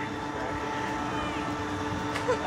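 A steady mechanical drone with constant hum tones over a background wash, unchanging throughout.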